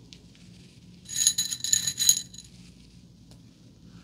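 Metal bobby pins jingling together for about a second, with a bright metallic ring, as a pin is picked out. Faint hair rustling and light ticks around it.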